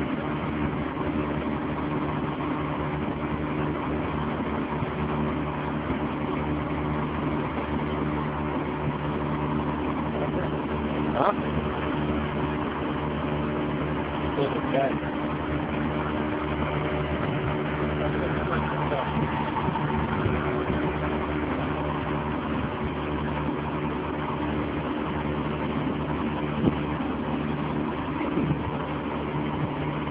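Small boat's engine running steadily under way, a constant low hum with even pitch.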